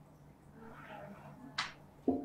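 A whiteboard marker stroke on the board: one short, sharp scratch about one and a half seconds in, over quiet room tone.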